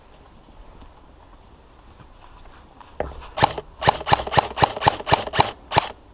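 M16-style airsoft electric gun fired close by in rapid single shots, about a dozen at roughly four a second, starting about halfway through and stopping just before the end.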